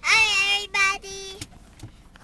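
A young girl singing a few high, held notes, stopping about one and a half seconds in.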